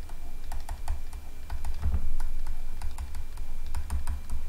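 Light, irregular clicks of a stylus tapping and stroking on a pen tablet as handwriting is written, several a second, over a low rumble.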